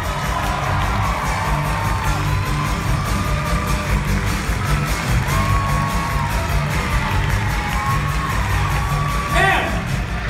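Live rock band playing with a steady beat, drums and bass driving, while a theatre audience cheers and whoops.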